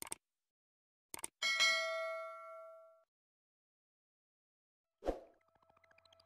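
Mouse-click sound effects, a pair of sharp clicks just after a second in, then a bright bell ding that rings for about a second and a half before fading: the usual subscribe-and-notification-bell effect. Near the end comes a short thump, followed by soft pinging tones.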